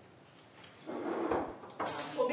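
Kitchen work noise at a counter: a short sliding, scraping sound about a second in, then a sharper knock near the end.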